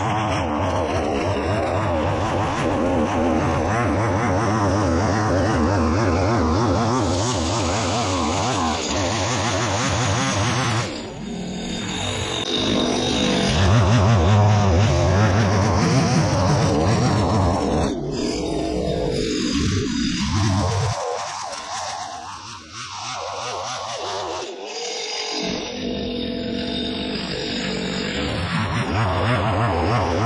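Two-stroke petrol brushcutter (whipper snipper) running hard, its nylon line thrashing through dense dry grass. The engine eases off briefly near the middle and drops for a few seconds later on before opening up again.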